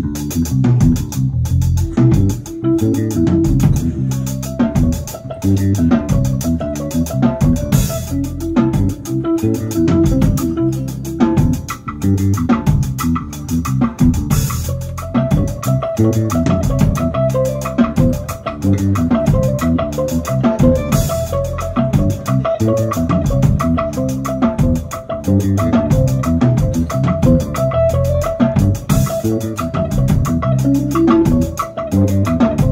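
Jazz quartet playing a slow, meditative piece live: electric bass and guitar notes over light drum kit. About halfway through, a repeating higher note figure comes in.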